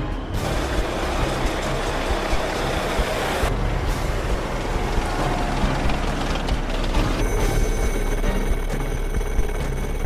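Heavy tracked armoured vehicles running, engine and track noise laid under background music. The sound changes abruptly about three and a half seconds in and again about seven seconds in, with a steady whine added in the last part.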